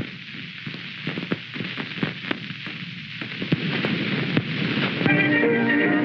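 Old optical film soundtrack hiss and crackle with scattered pops, then a small band starts playing about five seconds in, louder than the crackle.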